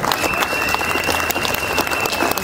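Crowd applauding, many hands clapping, with a steady high tone held over the clapping.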